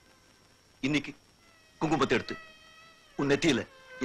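A man's voice in three short bursts of speech, a second or so apart, over soft sustained background music.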